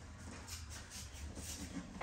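Faint shuffling and cloth rustling, a string of soft brushes over about a second and a half, as a person moves across padded mats in a martial arts uniform, over a low steady hum.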